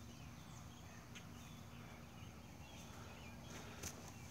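Quiet outdoor ambience: a low steady rumble with a few faint, short high chirps, and a couple of soft clicks just before the end.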